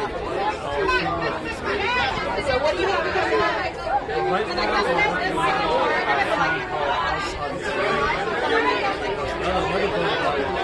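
People talking, with several voices overlapping as chatter.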